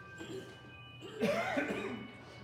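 A person coughs once, loudly and roughly, for under a second about a second in, over faint sustained musical notes.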